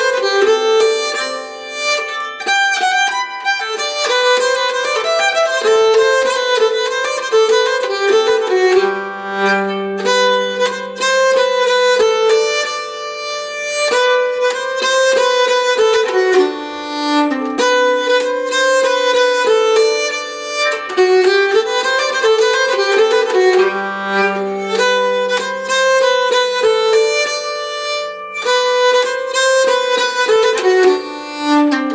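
Nyckelharpa, the Swedish keyed fiddle, bowed through a polska melody at a lively pace with no pauses. Twice, a lower note is held for a few seconds beneath the tune: about a third of the way in and again past three-quarters of the way.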